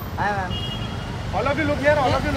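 Short calls from several voices over a steady low rumble of street and crowd noise.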